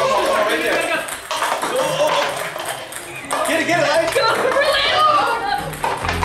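Ping-pong balls bouncing with light clicks on a granite countertop and knocking paper cups over, among excited unworded voices and background music.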